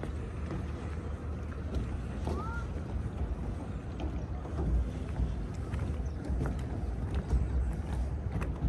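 Wind buffeting the microphone in gusts, with a few faint knocks and one short rising-and-falling tone about two and a half seconds in.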